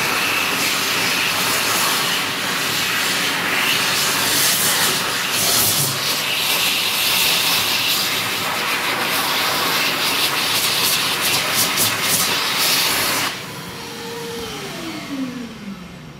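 Hokwang-built Dolphin Velocity ECO hand dryer blowing a loud, steady rush of air over hands. About 13 seconds in it cuts off and the motor winds down with a falling whine.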